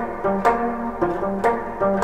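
A semi-hollow electric guitar plays a short riff of picked single notes on F, G and B-flat, with new notes struck about twice a second and left to ring.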